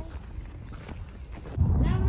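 Faint footsteps on a dirt path. About one and a half seconds in, a loud low rumble starts suddenly.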